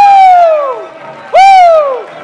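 Loud yells of "whoo" close to the microphone, each rising and then falling in pitch: a long one lasting about a second, then a shorter one near the end. A crowd cheers underneath.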